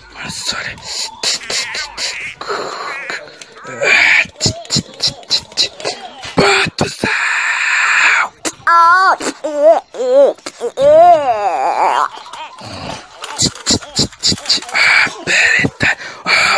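A voice making wordless play noises: wavering, wailing tones that warble up and down, and long hissing sounds, mixed with sharp clicks and knocks from toys being handled.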